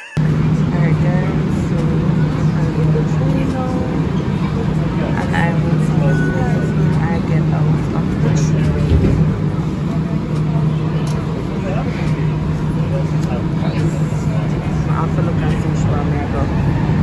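Steady, loud running noise heard from inside a Montreal Metro car (Azur train on rubber tyres), with a constant low hum under it. Passengers' chatter comes through faintly.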